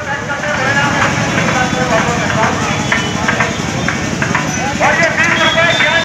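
Outdoor voices of several people talking over a steady low rumble, with a few short clicks; the talking grows clearer near the end.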